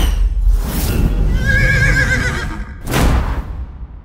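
Animated logo sting: a low rumble with a swoosh, a wavering horse whinny in the middle, then a second swoosh near the end that fades away.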